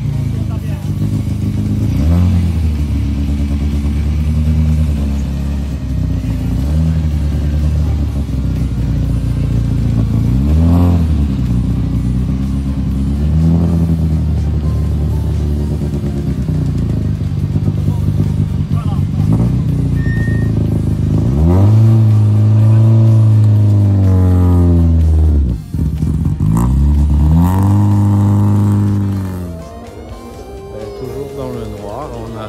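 Rally car engine revved repeatedly while the car stands still, the revs rising and falling several times, with two longer, higher revs near the end.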